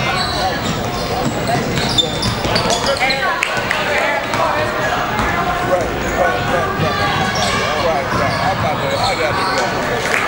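A basketball being dribbled on a hardwood gym floor, the bounces sounding among indistinct voices of players and spectators that carry through the hall.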